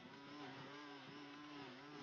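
Gas string trimmer engine running faintly, its pitch dipping and recovering over and over as the spinning line cuts into thick grass.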